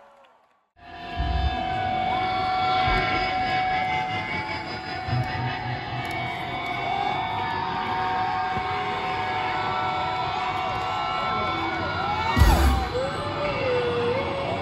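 Large festival crowd noise between songs: a dense roar of many voices cheering and shouting, starting abruptly about a second in after a brief silence, with a loud low thump near the end.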